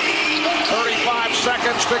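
Basketball TV broadcast sound: a commentator talking over steady arena crowd noise.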